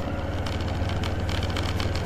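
Motorcycle engine running with a steady low hum and an even pulse as the bike is ridden along, under a hiss of wind and road noise.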